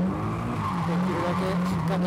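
A drift car's engine running hard, heard from inside the cabin, its note wavering up and down as the throttle is worked through a corner.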